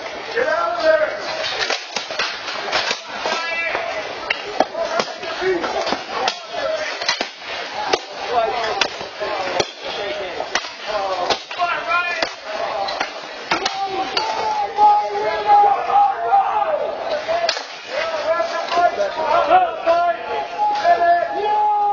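Steel weapons striking plate armor and shields in a close melee, many sharp hits in quick irregular succession, with men's voices shouting over them.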